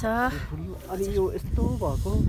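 A woman talking close to the microphone in short phrases, with other voices nearby, over a steady low rumble.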